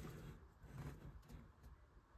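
Near silence, with a few faint clicks of hands adjusting a plastic LEGO brick model.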